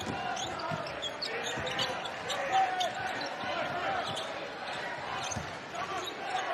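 Basketball arena during live play: a ball being dribbled on the hardwood court and short sneaker squeaks, over a steady crowd murmur.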